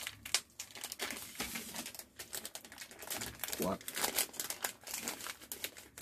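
Clear plastic wrapping crinkling and crackling in irregular bursts as a hand grips and handles a wrapped telescopic carbon-fibre fishing rod.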